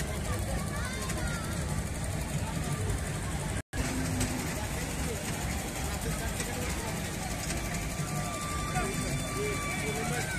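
Hubbub of a fairground crowd: many distant, overlapping voices over a steady low rumble. The sound cuts out completely for an instant about three and a half seconds in.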